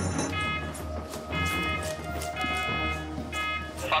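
Airport fire station alarm sounding in short repeated electronic tones, about one a second, four in all, over a steady low musical drone.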